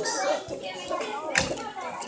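Background chatter of children's voices in a large room, with a short knock about one and a half seconds in.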